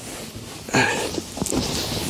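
A person climbing into a small car's cramped back seat: clothes rustling and a body shifting and sliding onto the seat, with a burst of rustling about three-quarters of a second in.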